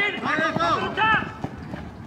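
Men's voices shouting short, unclear calls during the first second or so, then a quieter stretch of outdoor field noise.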